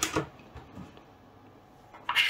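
A short sharp knock as a wooden ruler is set down on a tabletop, followed by a few faint light ticks of handling within the first second, then low room tone.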